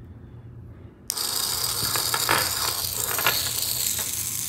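Small RoboThink hobby gear motors switched on by a simple switch module, starting suddenly about a second in and running with a steady high whir and a few clicks.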